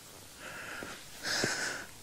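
A hiker breathing hard close to the microphone while climbing, with one louder, longer breath about a second and a half in.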